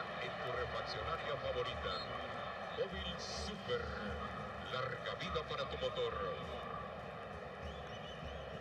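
Football stadium crowd noise: a steady murmur of many voices with scattered individual shouts.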